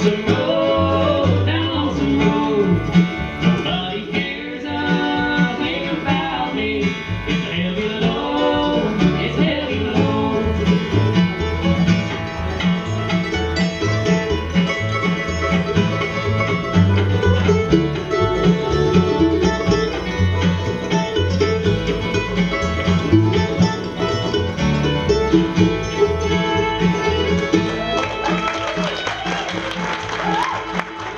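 Live acoustic string band playing a bluegrass tune on fiddle, mandolin, acoustic guitar and upright bass.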